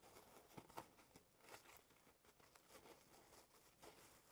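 Near silence, with faint scattered rustles and soft ticks of fabric being smoothed and shifted by hand under a sewing machine's presser foot.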